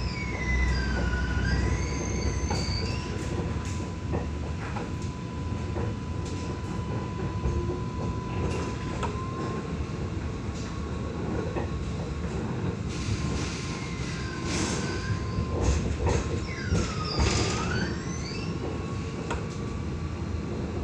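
Interior of an Alstom Citadis X05 light rail tram running slowly over curved street track, with a steady running hum and a thin steady tone. High wavering wheel squeal rises and falls in the first few seconds and again about two-thirds of the way through.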